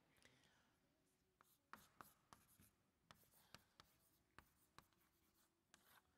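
Chalk writing on a chalkboard: faint, irregular taps and short scratches as the letters are written.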